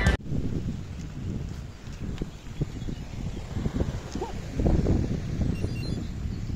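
Wind on an outdoor camera microphone, an uneven low rumble with scattered soft knocks.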